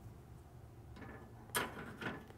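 A light click as a metal square is hung on a pegboard hook, about one and a half seconds in, with a few fainter clinks and scrapes around it.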